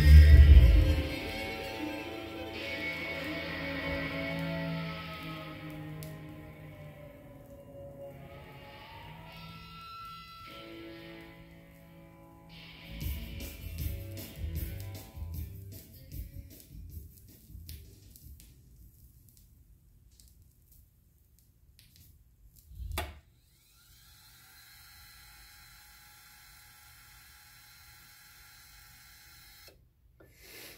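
Rock record playing on a Revox B790 direct-drive linear-tracking turntable: the last chord of a guitar song rings out and fades away over about ten seconds as the side ends. A few low thumps and clicks follow, and a faint steady hum is left near the end.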